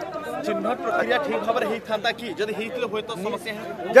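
Speech only: men talking in a crowd, quieter and farther from the microphones than the main speaker.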